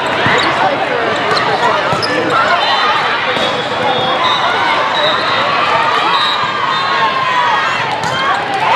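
Live sound of a crowded indoor volleyball hall during a rally: many overlapping voices of players and spectators, with occasional sharp thuds of the ball being hit.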